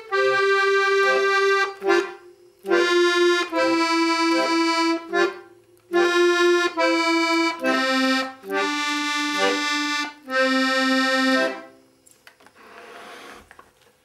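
Small Student-model piano accordion playing a slow beginner's tune in F: held right-hand melody notes in short phrases over brief left-hand bass-button notes. The melody steps down to a low closing note about 11.5 seconds in, then the playing stops.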